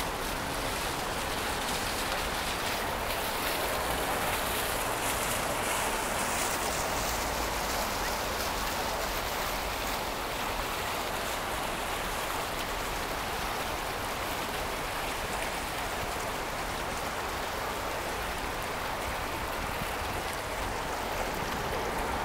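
Steady rushing and splashing of running water from small fountain jets, an even hiss that holds at one level throughout.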